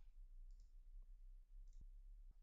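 Near silence: room tone with a low steady hum and a few faint computer mouse clicks.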